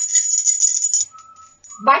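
A small hand bell shaken rapidly, giving a high, fluttering jingle that stops about a second in.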